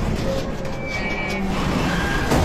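Steady roar of a waterfall's rushing water with a deep rumble under it, coming in loudly at the start, with a few faint held tones above it.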